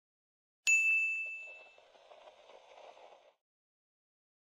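A single bright bell-like ding, struck about half a second in and ringing away over about a second. A faint noisy shimmer follows and cuts off suddenly near the end.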